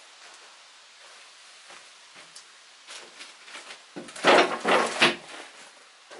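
A few faint clicks, then about four seconds in a loud burst of knocking and scraping handling noise lasting a little over a second.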